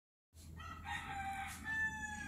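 A rooster crowing: one long crow that starts about half a second in and ends on a long held note.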